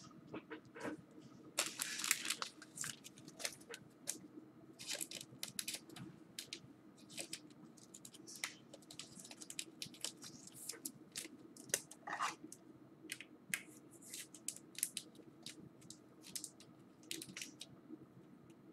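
Crinkling and tearing of a trading-card pack wrapper in irregular bursts, with small clicks and rustles of cards being handled, over a faint steady hum.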